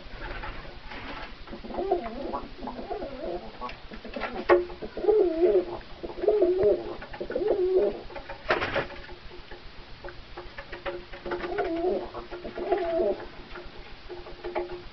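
Domestic pigeons cooing in runs of rolling, warbling coos, one stretch about four seconds in and another near the end. A single sharp knock comes about eight and a half seconds in.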